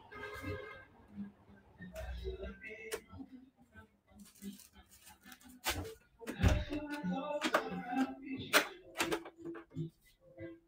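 Scattered clicks and knocks close to the microphone, with short non-word vocal sounds such as stifled giggles and hums in between.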